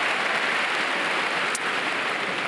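Large arena audience applauding, a steady even patter of many hands that eases off near the end.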